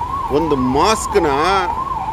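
An electronic siren sweeping quickly up and down in pitch, about two to three times a second, sounding without a break. A man's voice is heard over it.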